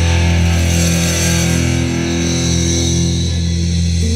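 Rock band recorded live: a distorted electric guitar chord and a low bass note held and ringing out, with no drum hits under them.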